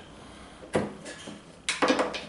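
Handling clatter as an oil drain fitting and its hose are worked into a generator's crankcase drain hole: a single light click about a second in, then a quick cluster of louder clicks and clinks near the end.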